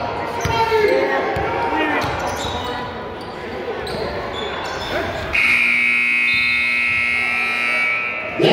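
A basketball bouncing on a gym's hardwood floor, with voices echoing around the hall. A little over five seconds in, the scoreboard buzzer sounds a steady horn tone for about three seconds, louder than everything before it.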